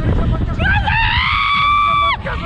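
A young woman screaming on a slingshot ride: one long, high-pitched scream that starts about half a second in, rises in pitch, then holds steady.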